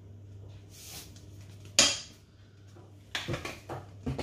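Kitchen utensil and container sounds: one sharp clink a little under two seconds in, then a few lighter knocks near the end, as a salt container is handled over a cooking pot and set back on the worktop. A low steady hum runs underneath.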